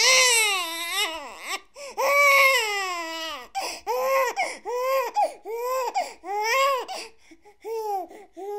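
A baby crying: two long wailing cries, then a run of shorter rising-and-falling wails, about one every two-thirds of a second.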